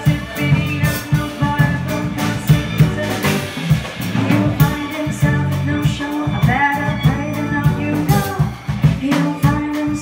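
Live bossa nova jazz: a woman sings into a microphone over piano, bowed violin, electric bass and a drum kit keeping a steady beat.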